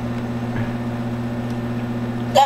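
Steady low hum with an even hiss behind it.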